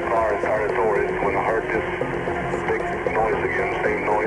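A man speaking in an old, narrow-band tape recording of an interview, with hiss above the voice and steady low tones underneath.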